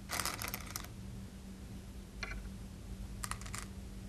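Go stones clicking on a wooden Go board as moves are played: a quick run of clicks right at the start, a single click about two seconds in, and another quick run of clicks a little after three seconds.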